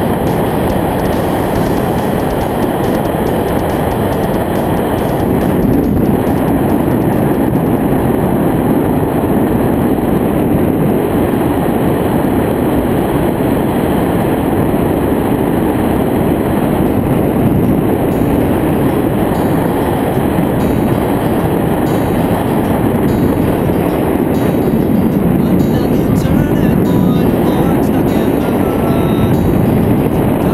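Steady, loud wind rushing over the camera microphone as a tandem skydive descends under an open parachute canopy.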